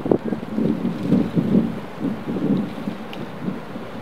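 Wind buffeting an outdoor microphone: an uneven low rush that rises and falls in gusts.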